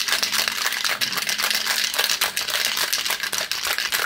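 Ice cubes rattling rapidly and steadily inside a metal cocktail shaker shaken hard by hand, chilling the drink.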